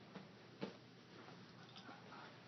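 Near silence: room tone with two faint clicks in the first second, the second one louder.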